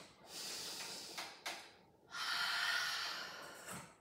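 A woman breathing audibly while exercising: two long breaths, each nearly two seconds, with a short pause between.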